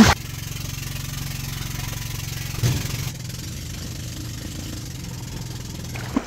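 Engine of a bangka outrigger boat running steadily, an even low hum with fast regular pulsing.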